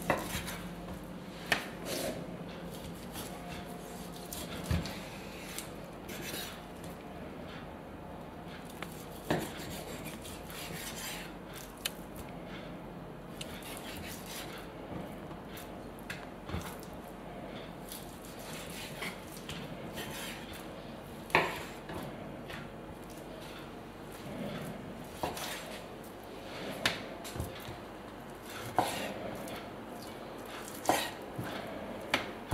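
Kitchen knife slicing through raw pork neck on a wooden end-grain cutting board, with scattered sharp knocks of the blade meeting the board and of meat chunks being set down in a tray.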